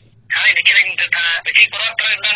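Speech only: a voice talking in Khmer after a brief pause, with a narrow, telephone-like sound.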